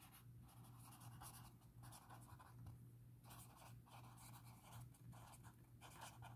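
Faint scratching of a pen writing on paper, in short strokes with brief pauses, over a low steady hum.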